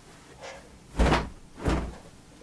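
Dry clothes being pulled off a folding clothes-drying rack and flapped out: two short, loud whooshing flaps, about a second in and again just over half a second later, with fainter rustling before them.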